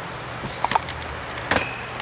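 A few light clicks and knocks from someone walking up to the camera and handling it, over a steady low room hum.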